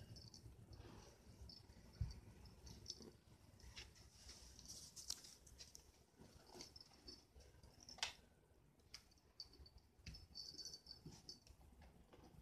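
Near silence, broken by faint scattered taps and rustles from a cat moving about on a doormat. Two sharper clicks come about two seconds in and again about eight seconds in.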